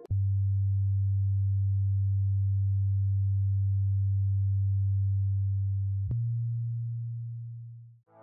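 A single low, steady electronic tone, close to a pure sine, starting with a click. About six seconds in it clicks again and steps slightly higher in pitch, then fades away near the end.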